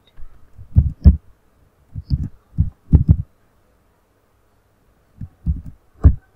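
Computer keyboard keystrokes: dull, thudding key presses in short runs, with a pause of about two seconds in the middle.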